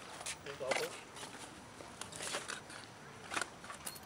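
Scattered brief rustles and scuffs from a drawstring gear bag being lifted and handled and shoes shifting on pavement, with a short vocal sound a little under a second in.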